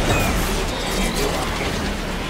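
Transformers-style transformation sound effect for robots combining into a giant combiner: a dense run of ratcheting clicks and whirring gear noise.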